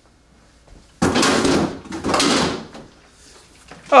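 Rummaging inside an open refrigerator: two rustling, sliding bursts in quick succession about a second in, as containers and drawers are moved about.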